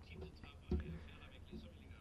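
Faint, distant speech under a low steady hum, after an abrupt switch in the audio feed at the start; the speech is too weak to follow.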